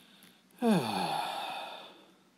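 A man sighing once: the voice drops in pitch and trails off into a breathy exhale that fades over about a second.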